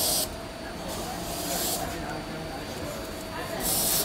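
Velcro (hook-and-loop fastener) on a jacket being ripped apart in three short, hissy tears: one at the start, one about a second in, and one near the end. A steady low hum sits underneath.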